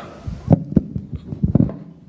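A few dull, low thumps at irregular intervals, the strongest pair about one and a half seconds in.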